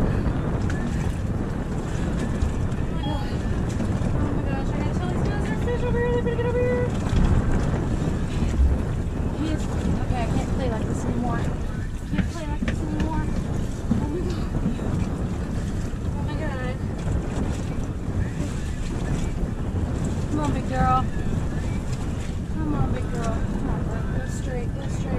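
Steady wind buffeting the microphone on an open boat, a dense low rumble throughout, with faint bits of a voice now and then.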